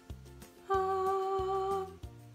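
Quiet background music with a repeating bass line; about two-thirds of a second in, a single steady hummed note is held for about a second over it.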